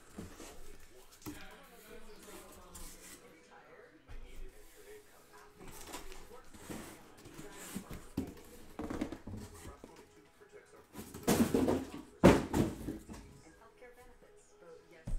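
Cardboard shipping case being opened and handled: scattered rustling and scraping of cardboard, with two louder scraping noises about eleven and twelve seconds in.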